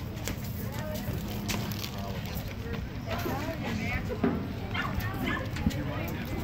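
Indistinct voices and calls from people around a baseball field, with a few short sharp knocks.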